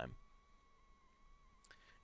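Near silence with a faint steady high whine, and a single computer mouse click near the end.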